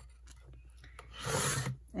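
Cutting head of a Fiskars paper trimmer sliding along its rail. About a second in there is one short rasping scrape lasting under a second.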